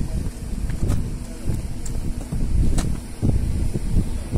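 Wind buffeting the microphone, a rough low rumble with a few faint clicks.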